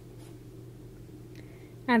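Faint rustle and light ticks of a wooden crochet hook pulling cotton yarn through stitches, over a steady low room hum.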